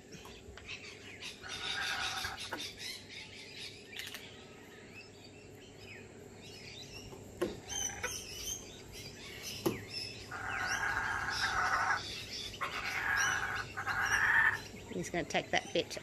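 Laughing kookaburras calling in short bursts of rapid chattering notes: one burst about two seconds in, then two longer bursts close together near the end. A couple of sharp taps come in between.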